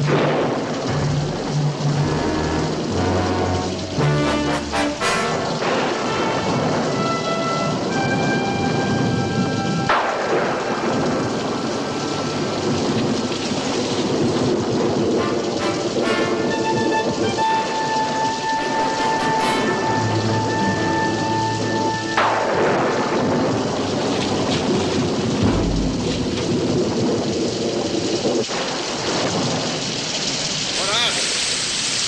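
Steady rain, with orchestral score music of long held notes playing over it.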